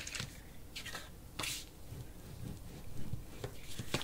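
Cardstock being handled and folded along its score line by hand, a few brief paper rustles and swipes, the clearest about a second and a half in.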